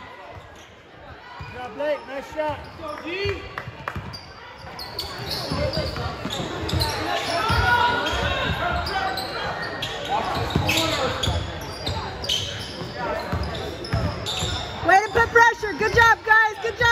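A basketball being dribbled on a hardwood gym floor, with players and spectators calling out in the echoing hall. There is a burst of loud shouting near the end.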